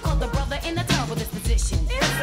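New jack swing music playing in a DJ mix, with vocals over a steady beat.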